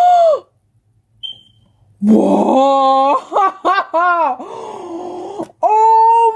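A young woman's wordless excited cries of delight: one drawn-out cry that breaks off, a pause of about a second and a half, then a long run of high, wavering squeals that rise and fall in pitch.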